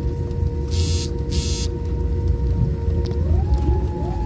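Jet airliner cabin noise during landing: a loud low rumble with a steady engine whine, the whine rising in pitch about three seconds in. Two short hisses come about a second in.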